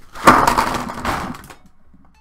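A set of about 80 Touch Cool twin-tip plastic alcohol markers being dumped out of their case onto a desk. The plastic barrels land and knock together in a loud, dense clatter that lasts about a second and a half.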